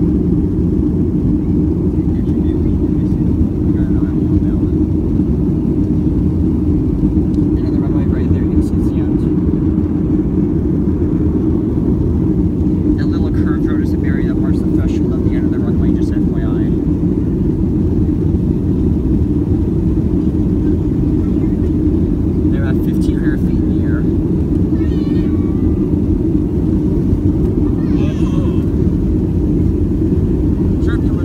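Steady low roar inside the cabin of a Boeing 737-300 climbing after takeoff: its CFM56 jet engines and the rushing air, even in level throughout. Faint passenger voices come through at moments.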